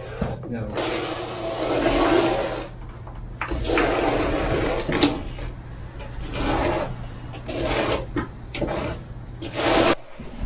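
Loop roller being worked back and forth through wet, self-levelling urethane cement floor coating, a series of swishing strokes over a steady low hum.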